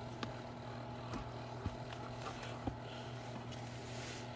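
Faint handling noise as a rubber shifter boot is worked up off the gear linkage, with a few light clicks, over a steady low hum.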